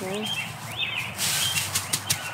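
Small birds chirping in short, repeated, arching calls in the background, with a few light clicks and rustles.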